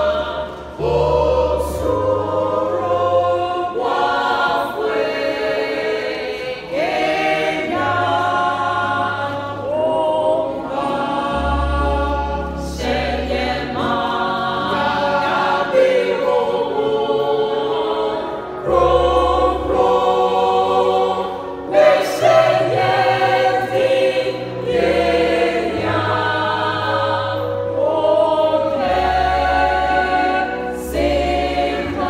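Mixed choir of men's and women's voices singing together, with steady low bass notes held underneath that change every few seconds.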